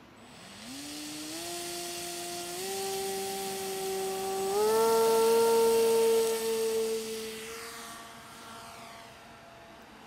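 Electric motor and propeller of an LR-1 Racing Devil RC racing plane, running on a 5S battery at about 700 watts, throttled up in several steps to a loud, high whine. It then fades and drops in pitch as the plane leaves the ground and flies off.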